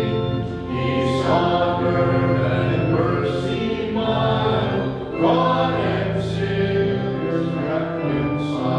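A choir singing a slow hymn in sustained notes over a steady low bass line.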